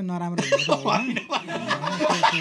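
A man talking in a lively way, with chuckles of laughter mixed into his speech.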